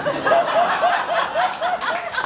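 Laughter in response to a punchline, led by one rhythmic laugh of about five "ha"s a second.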